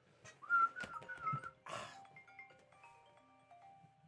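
Whistling: a short wavering tune for about a second near the start, then a brief breathy rush, followed by quiet background music of clear single notes.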